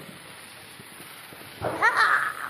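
Low, steady background hiss, then near the end a sudden, loud, high-pitched yell from a man that rises in pitch.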